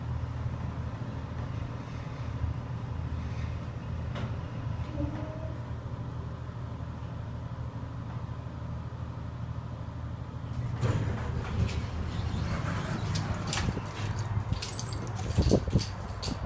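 Montgomery elevator car running with a steady low hum as it travels to the second floor. A little over ten seconds in, the car doors slide open with a broader rush of noise, and a few clicks and knocks follow near the end.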